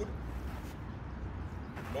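A steady low background rumble, with a spoken word ending just at the start and another beginning at the very end.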